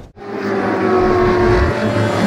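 A car engine sound effect building up in level after an abrupt cut, with steady musical tones under it.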